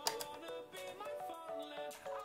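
Background music: a light melody of short stepping notes. It has one sharp click at the very start.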